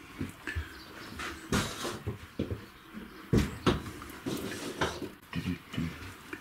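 Scattered knocks and thumps of someone walking through a narrowboat cabin, the loudest about a second and a half in and again twice around three and a half seconds in.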